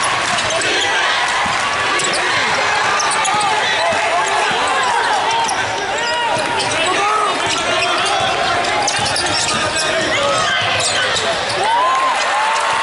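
Basketball game on a hardwood court: sneakers squeak repeatedly, in many short rising-and-falling chirps, and the ball bounces, over a steady hubbub of voices.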